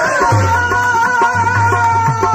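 Qawwali music: a long held melodic note with its overtones, over a regular low drum beat.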